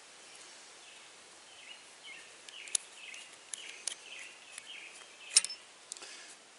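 Brass garden-hose fittings being unscrewed by hand: a few small, sharp metallic clicks and faint scraping as the threads turn and the parts come apart. The loudest click comes near the end.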